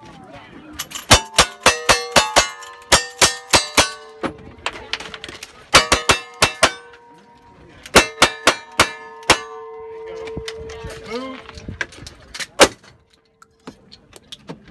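Gunfire in quick strings, with steel plate targets ringing after the hits; three bursts separated by short pauses, then one last loud shot near the end.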